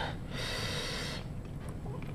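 A person's sharp, breathy rush of air lasting about a second, then quieter.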